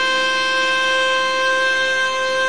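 Alto saxophone holding one long steady note in a Carnatic piece, with a low steady drone underneath.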